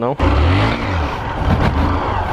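Honda Fan 125 motorcycle's single-cylinder four-stroke engine revving under throttle during a wheelie attempt, its note rising and falling.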